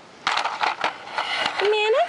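Handling noise from a yellow plastic toy vehicle being moved along a wooden play set: about a second and a half of rustling with small clicks and scrapes. A girl's voice starts near the end.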